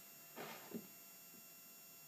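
Near silence: room tone with a faint steady hum, and a brief soft rustle about half a second in.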